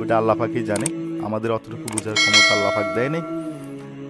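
A single metallic clang about two seconds in that rings and fades over roughly a second, heard over background music.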